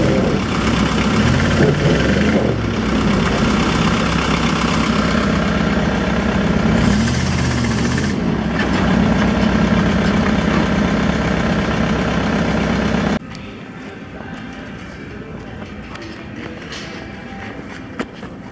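Dump truck engine running under load and revving as it pulls a stuck backhoe up a bank on a tow line, its pitch rising and falling. It cuts off abruptly about 13 seconds in, leaving a much quieter background.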